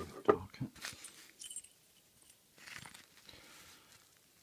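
Handling noise as a padlock key is taken out of a small case: a few short knocks and rustles, with a light metallic clink about a second and a half in.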